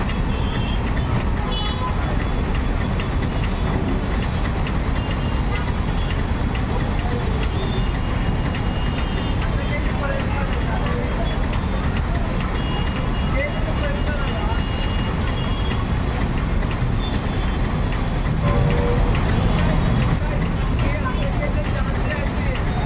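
Busy city street traffic: a steady rumble of motorcycle, auto-rickshaw and truck engines, with indistinct voices and a few short horn toots.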